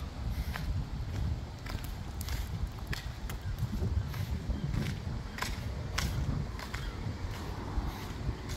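Footsteps on rough tarmac and concrete: short scuffs and clicks, roughly one or two a second, over a steady low rumble.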